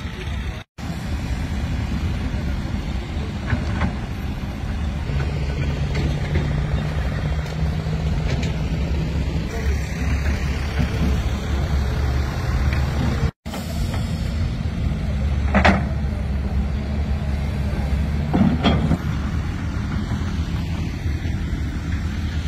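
Heavy vehicle engines running with a steady low rumble, and a few brief knocks or clanks. The sound drops out abruptly twice where the footage is cut.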